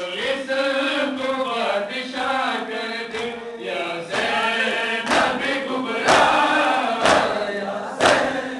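A group of men chanting a Shia Muharram mourning lament in unison. From about five seconds in, the chant is joined by loud matam chest-beating, hands striking chests about once a second.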